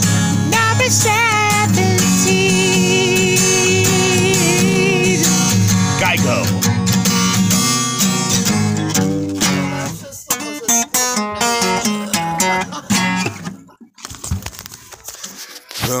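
A singer holds a long, wavering note over strummed acoustic guitar, then runs through a few changing notes. From about ten seconds in the music thins to scattered short sounds and almost stops before the end.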